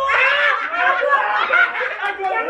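A group of young men and women laughing together, several voices overlapping.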